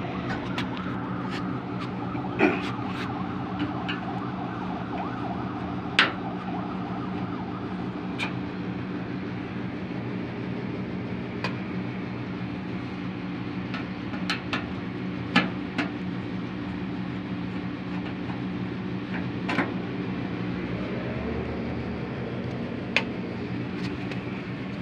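A steady machine hum made of several low, even tones, with scattered light clicks and knocks from time to time.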